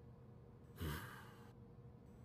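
A man's short, breathy 'hmm', sigh-like, about a second in, over faint room tone.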